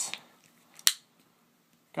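A single sharp click, a little under a second in, as hands handle the magazine at the base of the grip of a Smith & Wesson M&P 9c pistol.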